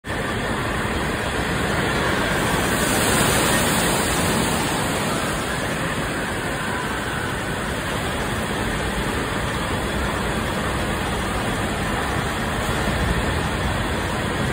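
Steady rush of water pouring and splashing from the play structures of an indoor water park, swelling slightly a few seconds in.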